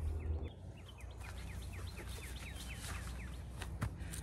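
A songbird singing a quick series of short notes, each falling in pitch, about five a second for roughly two seconds in the middle.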